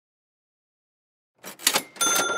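Dead silence, then about one and a half seconds in a short whooshing sweep of noise with a sharp hit: an edited transition sound effect in a video intro.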